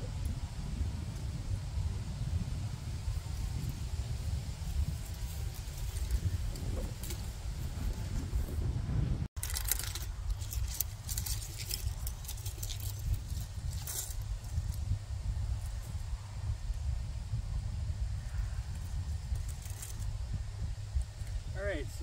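Gusty wind buffeting an outdoor microphone, a constant low rumble. There is a sudden break about nine seconds in, followed by a few seconds of scattered crackles.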